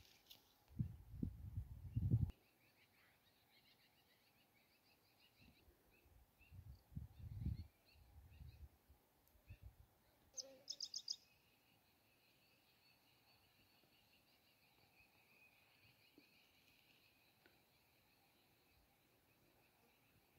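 Birds calling in open farmland: scattered high chirps, then a quick run of about five sharp notes just past the middle, followed by a thin high buzz held steadily through the second half. Low muffled rumbles come near the start and again around seven seconds.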